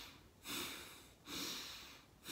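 A man breathing audibly in time with paddle strokes: two quick breaths, each starting suddenly and fading away over about half a second. This is weak-side paddling breathing, the breath linked to the arm strokes.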